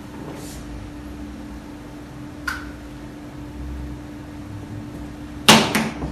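Finger-on-finger chest percussion, a pleximeter finger struck on the chest wall: one short tap about halfway through, then a quick run of about three louder taps near the end. The percussion runs along the fifth intercostal space toward the heart to find the left border of relative cardiac dullness.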